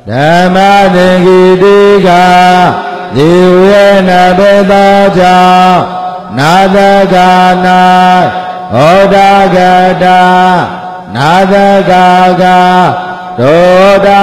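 A Buddhist monk's voice chanting Pali text on a steady held note. It comes in short phrases of two to three seconds with brief pauses between them, each phrase sliding up onto the note.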